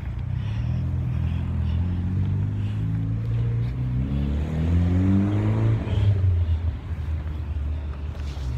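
A car engine driving by close at hand, its pitch rising as it speeds up from about three seconds in and loudest near six seconds, then fading.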